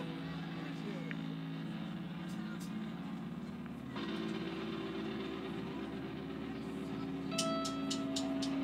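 A quiet pause between songs: low sustained tones from the band's instruments and amplifiers hold under faint voices, shifting about halfway through. A few light taps come near the end.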